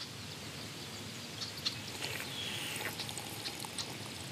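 Outdoor nature ambience: a steady soft hiss with scattered faint high chirps and ticks, and a short faint falling whistle partway through.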